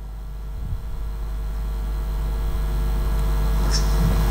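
Low electrical hum with no voices, growing steadily louder.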